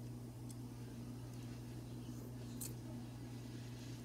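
Steady low hum of an indoor appliance or electrical background, with a few faint clicks and one brief high hiss about two and a half seconds in.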